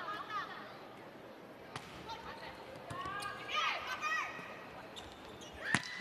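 Volleyball thumps in an arena: a few sharp hits of the ball, the loudest just before the end, over faint background crowd noise and distant voices.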